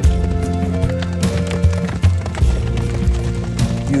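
Background music with held notes over the hoofbeats of a galloping horse.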